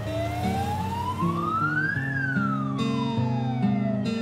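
Police car siren wailing: one slow rise in pitch over about two seconds, then a slow fall, over background music.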